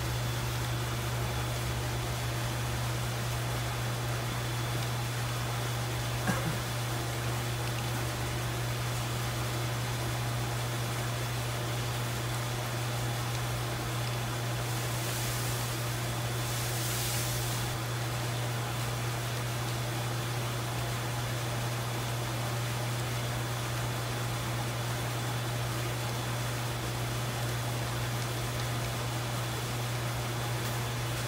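A steady low hum over an even background hiss, with one faint click about six seconds in and a brief rise of high-pitched hiss around the middle.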